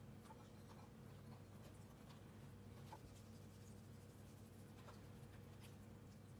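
Near silence with a low steady hum, broken by faint scattered taps and rustles of chopped vegetable pieces being dropped into a baking tray.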